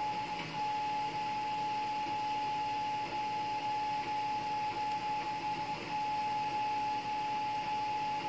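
A steady whine held at a single pitch throughout, over faint room noise.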